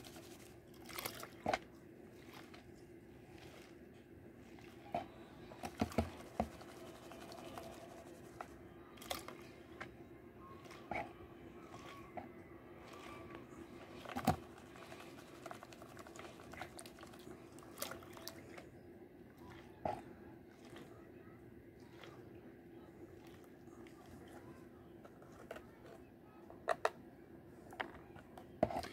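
Plastic gold pan being swirled and tilted in a tub of water to wash off pay dirt: faint water sloshing with scattered clicks of gravel and small stones knocking in the pan, over a steady low hum.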